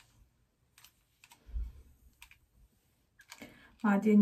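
A few light clicks from a curling iron's clamp and handle as it is worked through a lock of hair, with a soft low thump about one and a half seconds in. A woman's voice starts near the end.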